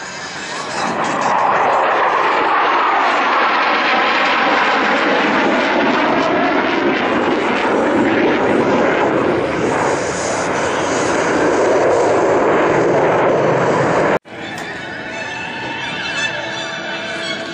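Jet engines of two Thunderbirds F-16 Fighting Falcons roaring past low in an opposing solo pass, the noise building about a second in and holding loud, with sweeping, falling pitch as the jets pass. The roar cuts off abruptly about fourteen seconds in.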